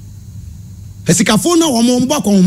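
Speech: a man's voice starts about a second in, after a short pause filled only by a low steady hum.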